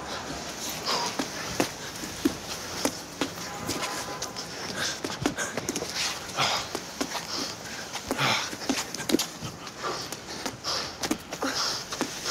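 Hard breathing and panting from exertion during a medicine-ball drill. Repeated dull thuds come from an eight-pound medicine ball striking a handball wall and being caught, several strikes every few seconds.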